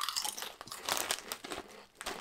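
Two people biting into and chewing flat, ridgeless potato chips: a run of irregular, crisp crunches.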